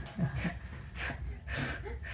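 A toddler's short breathy puffs of air, blowing at a candle flame, several times in a row.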